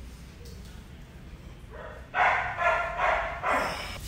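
A dog barking four times in quick succession, starting about halfway through.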